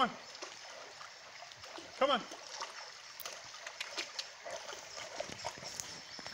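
Shallow river water running, with small irregular splashes from a bullmastiff wading in it.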